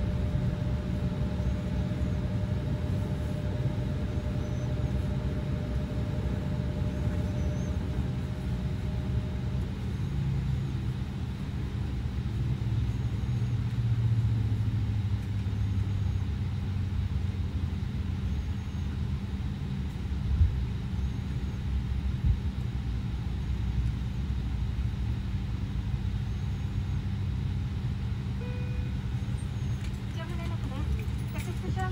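Steady low mechanical rumble of airport ground machinery, heard from the jet bridge. A faint steady hum stops about ten seconds in, and two brief thumps come past the middle.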